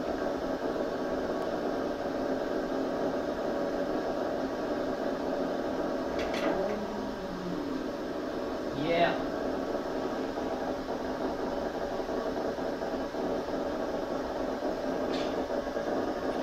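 Audio monitor of a single sensillum recording rig, playing the steady crackling noise of a transgenic Drosophila ab3A olfactory neuron's background firing. A brief louder sound comes about nine seconds in.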